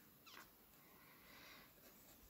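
Near silence: a faint oil-paint brush stroke on canvas, with a brief faint falling squeak near the start.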